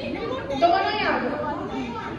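Women talking over the chatter of a crowd in a large hall.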